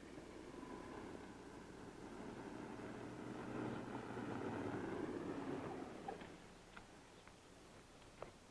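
A car pulling up, its engine and tyre noise growing louder and then dying away about six seconds in, followed by a few faint clicks.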